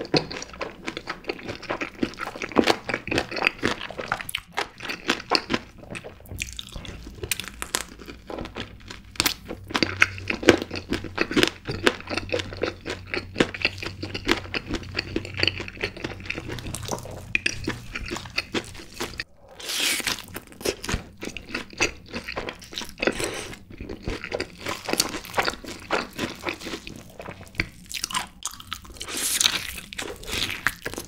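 Close-miked chewing and crunching of crispy, sauce-glazed Korean yangnyeom fried chicken, with wet, sticky mouth sounds and a steady run of crackles. A fresh bite into a drumstick comes near the end.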